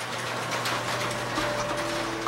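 Blackout roller shade lowering over a window, its motor running with a steady mechanical whir and low hum.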